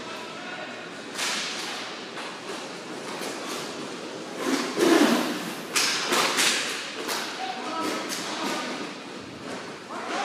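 Inline roller hockey play at the net: sharp stick slaps and puck knocks, loudest in a cluster of cracks about five to six and a half seconds in, as the action reaches the crease. Players' voices call out over the rink's hall echo.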